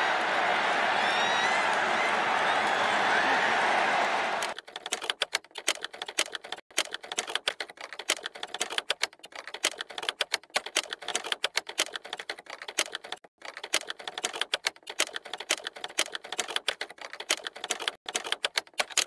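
Steady stadium crowd noise that cuts off suddenly about four and a half seconds in. It gives way to a rapid, irregular run of sharp clicks, like fast typing, that lasts to the end.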